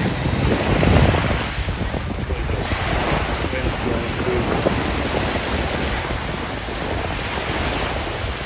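Small waves breaking and washing up a sandy beach, with wind buffeting the microphone.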